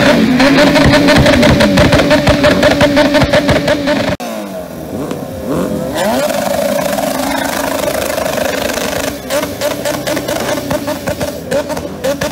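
Background music with a steady beat, then after a sudden cut about four seconds in, a motorcycle engine revved hard while standing still: revs sweep up and down, then are held high, pressed against the rev limiter.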